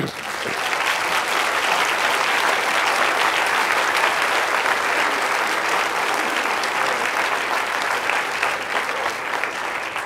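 Audience applauding, starting at once, holding steady, then easing off near the end.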